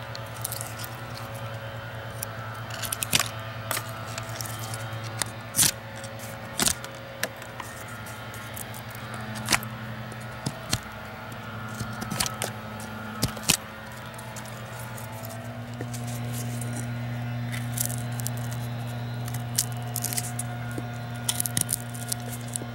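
A D2-steel fixed-blade skinning knife cutting into a wooden branch by hand, a dozen or so short, sharp clicks of the blade biting the wood at irregular intervals. Under them runs the steady drone of a leaf blower, which grows louder about two-thirds of the way through.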